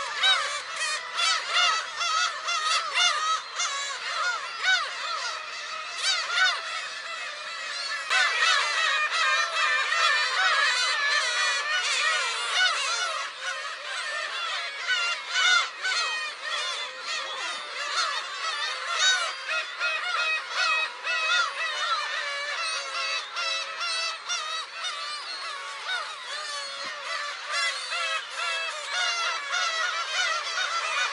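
A colony of black-tailed gulls calling, many overlapping calls at once in a dense, unbroken chorus.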